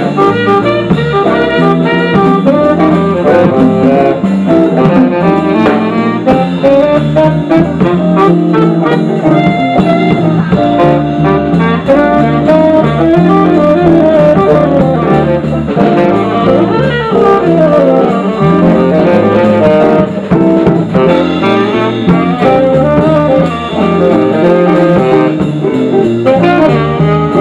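Live jazz band: saxophone playing over electric guitars, bass guitar and a drum kit.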